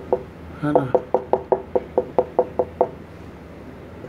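Marker tip tapping on a whiteboard as dots are stippled in quick succession: about a dozen sharp taps at roughly five or six a second, stopping about three seconds in.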